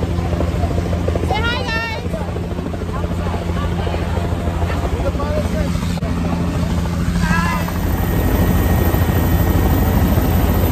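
Helicopter in flight, heard from inside its doors-off cabin: a steady deep rotor and engine drone under rushing wind, growing a little louder near the end.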